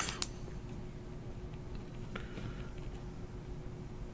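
Quiet room background with a faint steady hum and a single short click about a quarter second in.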